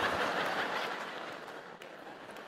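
Audience laughing, dying away over the two seconds.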